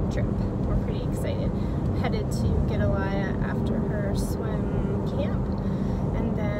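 Steady road and engine noise inside a moving vehicle's cabin, with a low drone throughout. A woman's voice talks intermittently over it.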